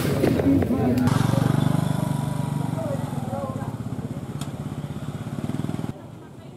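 A vehicle engine running close by, a steady low beat that slowly fades and cuts off suddenly near the end, with crowd voices in the first second.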